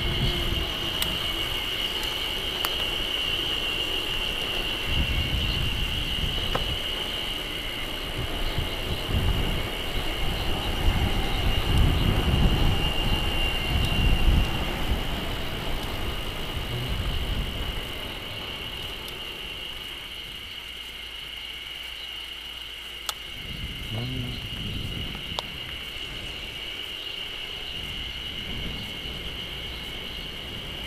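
Wind buffeting the camera microphone on a moving bicycle: a rumbling roar that swells and is loudest about halfway through, then eases off. A steady high-pitched tone runs underneath the whole time.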